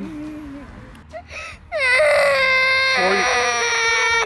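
A young girl crying in one long, loud, high-pitched wail that starts about two seconds in, right after her scoop of ice cream has fallen off the cone onto the grass.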